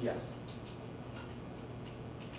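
A few faint, irregular clicks over a steady low hum.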